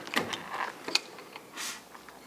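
A few light clicks and taps of a hand tool being handled against the car's bodywork, with a short hiss about one and a half seconds in.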